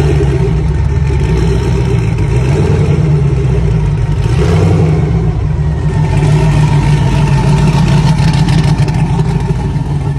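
Twin-turbocharged engine of a Jeep Cherokee XJ running at a steady idle with a low rumble. A burst of hiss comes about four seconds in, and more hiss sounds from about six seconds on.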